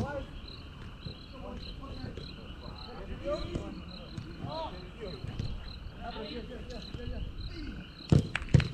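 Night insects chirping steadily, a high, evenly repeated chirp a few times a second, under far-off shouts from players.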